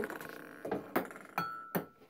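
Ping-pong balls bouncing on a ping-pong table: about four sharp clicks roughly a third of a second apart, with a brief high ringing note after the later ones.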